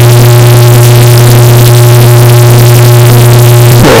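Earrape meme audio: a very loud, heavily clipped, steady low drone held at one pitch, cutting off just before the end.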